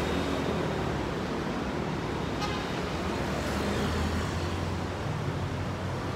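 City road traffic passing below: a steady rumble of car and scooter engines and tyres, with a short tick about halfway through.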